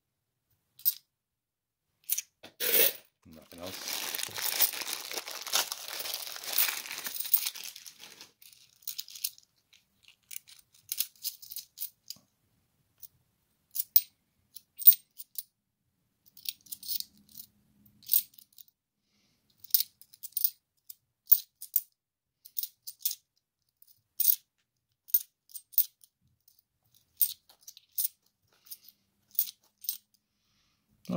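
Seven-sided 50p coins clinking against one another in the hands as they are sorted, in sharp metallic clicks scattered throughout. A clear plastic coin bag crinkles for about five seconds, starting a few seconds in.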